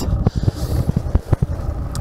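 Fat tyres of an electric recumbent trike rolling over beach gravel: a steady crunching with irregular sharp clicks and knocks.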